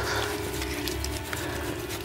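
Horror-film sound effect of a face being sawed at: a gross, wet sawing and scraping of flesh, with a steady low drone underneath.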